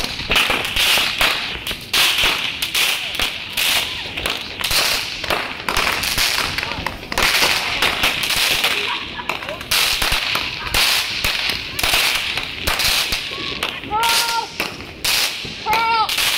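Fireworks going off at close range, crackling and popping in a dense, unbroken run of sharp cracks.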